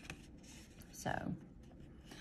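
Faint rustling and light scratchy rubbing of a paper swatch card handled in the fingers, with a few small clicks.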